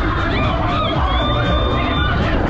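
Loud electronic dance music from a funfair thrill ride's sound system, with riders cheering and screaming over it.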